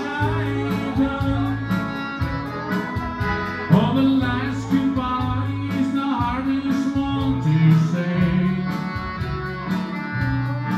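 Accordion and steel guitar playing an instrumental break in a country song, with held chords over a steady bass line.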